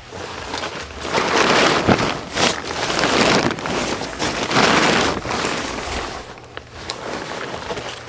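Rustling and scraping of junk being moved off a stored car, coming in swells with a couple of sharp knocks.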